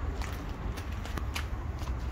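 Footsteps crunching on gravel, a scatter of short crisp ticks, over a steady low rumble.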